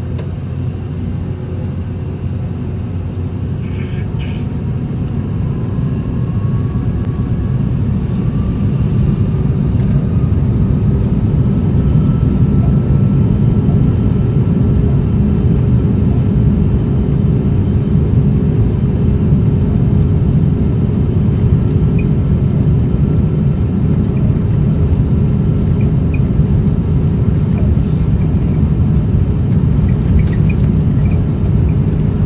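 Airbus A330's Rolls-Royce Trent 700 jet engines heard from inside the cabin, spooling up to takeoff power: a whine climbs in pitch and the rumble grows louder over the first ten seconds or so. It then holds as a steady, loud rumble as the aircraft accelerates down the runway.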